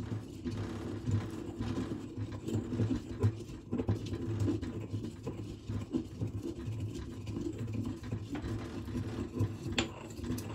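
Pestle grinding dried herbs in a small metal mortar: a steady, uneven crunching and scraping as the leaves are crushed, with a sharper tap near the end.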